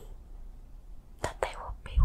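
A woman in a hypnotic trance whispering softly, with a couple of clicks from her mouth just past a second in as she begins to answer, and a short low thump at the very end.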